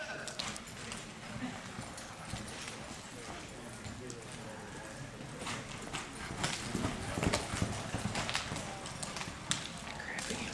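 A horse's hoofbeats at a gallop on an arena's dirt floor, an irregular run of thuds that grows louder and busier in the second half.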